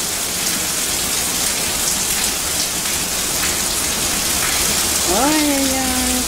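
Steady rain falling onto wet paving, an even hiss of many drops with no let-up.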